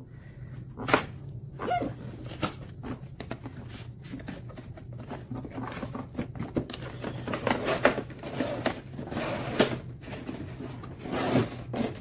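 Cardboard toy box being opened and a clear plastic blister tray slid out and handled: irregular scrapes, clicks and rustles of cardboard and stiff plastic, over a steady low hum.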